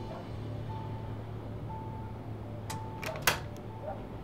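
Electronic beep repeating about once a second, each beep under half a second long, typical of a hospital patient monitor, over a steady low hum. A few clicks come near the end, one of them sharp and loud.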